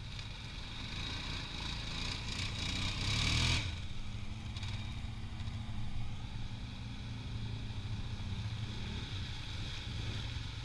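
ATV engines running steadily as the quads drive along a muddy trail, with a brief loud rushing noise about three and a half seconds in.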